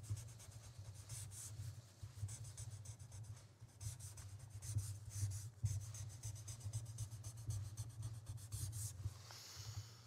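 Pen scratching across paper as a document is signed, in a run of short strokes with brief pauses between, picked up by a table microphone close by. Near the end comes a brief rustle of paper.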